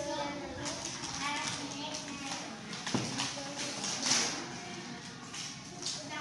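Young children talking indistinctly in a classroom, with a sharp click about three seconds in and another knock about a second later.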